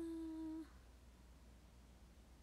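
A young woman's voice holding one steady hummed note for a little over half a second, then stopping, leaving faint room tone.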